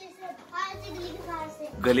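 A young child speaking quietly, between louder adult speech.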